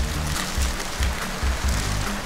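Rice trickling down through a homemade paper-towel-roll rain stick with a coiled tin-foil baffle inside, making a steady hiss that sounds like rain. Background music with a steady beat plays under it.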